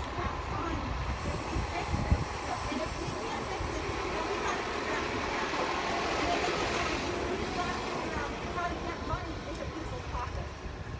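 Outdoor street noise: a passing vehicle swells to its loudest a little after the middle and fades again, over a low murmur of voices.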